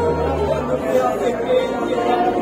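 Church worship music with held low bass notes, under many voices in a large hall.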